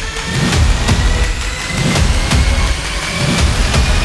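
Trailer-music sound design built around a car engine running and revving, over heavy low pulses about twice a second and regular sharp ticks, with a thin high tone that rises slowly throughout.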